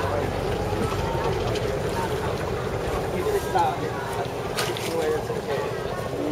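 Indistinct voices of several people talking over the steady low running of a boat engine.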